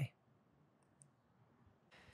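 Very quiet room tone with one small, faint click about a second in.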